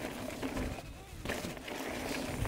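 Full-suspension mountain bike rolling downhill over a rough dirt and stony trail: a low tyre rumble with scattered clicks and rattles from the bike.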